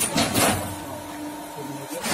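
Hydraulic block machine's pump unit running with a steady hum, with two short rushing bursts of noise in the first half second.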